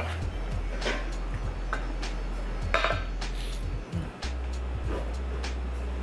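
A few short knocks and clinks of hands and a cup against a white ceramic sink used as a sundae bowl while ice cream is scraped out, the loudest just under three seconds in. Background music with a steady low bass runs underneath.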